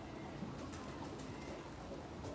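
A bird cooing faintly over low, steady background noise.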